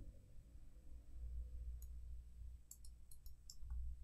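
A few faint computer mouse clicks, a couple about two seconds in and a handful more shortly after, over a low steady hum.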